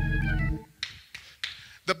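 A short organ chord with a deep bass, held about half a second and cut off, followed by a few faint clicks.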